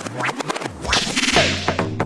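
Breakbeat DJ mix at a transition: the bass drops out and a whooshing noise sweep builds over about a second, then a steady bass line and a fast, even beat come back in near the end.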